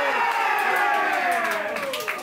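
A football fan's long drawn-out cheer at a goal being scored, one sustained cry that slides steadily down in pitch and fades near the end.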